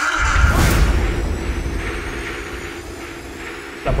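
A deep boom, strongest in the low end, that starts suddenly and fades out over about three seconds.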